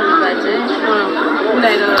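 Several people's voices talking at once, overlapping chatter.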